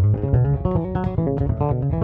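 Ken Smith five-string electric bass strung with extra-light GHS Super Steels stainless roundwounds, played as a fast lead-style run of many quick single notes that climb toward the upper register.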